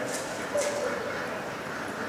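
A dog barks once, about half a second in, over the murmur of voices in a large indoor arena.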